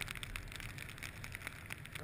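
Wind-driven snow blowing against the helmet camera and the riders' jackets: a steady hiss with faint scattered crackling ticks.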